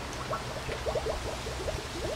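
Two-liter plastic pop bottle held under water in a rain barrel, filling with a quick, irregular run of small glugs as air bubbles out of its neck.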